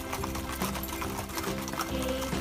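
Several horses walking, their hooves clip-clopping in an irregular patter of clicks, under background music.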